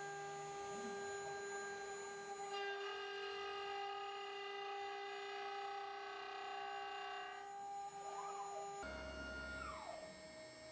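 CNC router spindle running with a steady high whine of several held tones as it machines a wooden hammerhead cane handle. The set of tones changes abruptly twice, and near the end one tone glides down.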